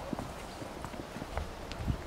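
Footsteps on asphalt: a scattered series of light shoe steps as people walk off, over a low rumble of wind on the microphone.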